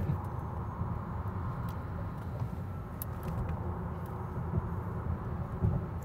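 Road and tyre noise heard inside the cabin of a Lucid Air Dream Edition electric sedan while driving: a steady low rumble with no engine note.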